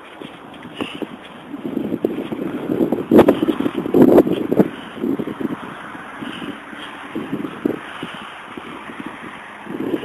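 Dry grass and bramble stems rustling and scraping against the camera as it is pushed through undergrowth, in irregular bursts with a few sharp crackles, loudest a few seconds in.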